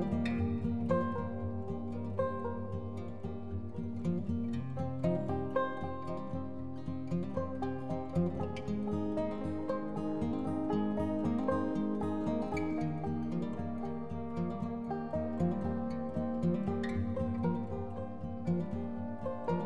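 Background instrumental music played on plucked strings, a run of picked notes over held low notes.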